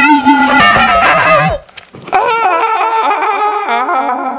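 A man voicing a dragon's cry with his mouth, a long wavering call that breaks off about one and a half seconds in, followed by a second wavering call.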